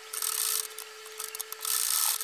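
Usha sewing machine stitching through thick fleecy handkerchief fabric in two short runs, one near the start and one near the end, over a faint steady hum.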